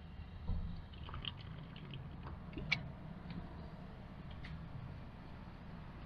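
Faint sipping and swallowing of carbonated cola from an aluminium can, with a few small clicks, the sharpest about two and a half seconds in.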